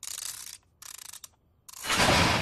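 Cartoon sound effect of a safe's combination dial being turned by hand: three short bursts of dial-turning noise, with a louder rush of sound starting near the end.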